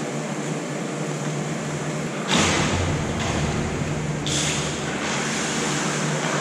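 Ice-arena ambience: a steady ventilation hum under a noisy hiss. About two seconds in, a louder burst of hiss with a deep rumble starts suddenly, and a second hiss rises about four seconds in.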